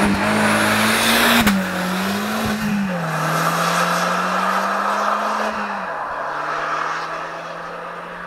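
Škoda 120 accelerating hard away from a sprint start. The engine note climbs, drops at an upshift about a second and a half in, climbs again and drops at another shift near three seconds. It then holds steadier and fades as the car draws away.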